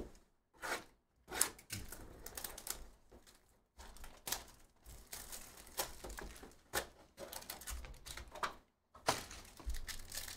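Cardboard trading-card hobby boxes being picked up and handled on a table: irregular clicks, taps and scrapes. Near the end comes the rustle of a foil card pack being handled.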